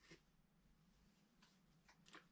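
Near silence: room tone with a faint hum and a few very faint ticks.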